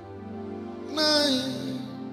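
Slow gospel worship music with steady sustained chords, and a singer's voice coming in about a second in with a short held note that slides down in pitch.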